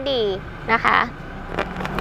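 A woman speaking Thai in short phrases, with a faint low background hum in the pauses.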